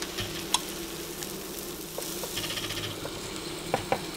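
Waffle batter sizzling on a hot electric waffle iron as it is poured in, a steady hiss. There are a couple of sharp clicks near the end.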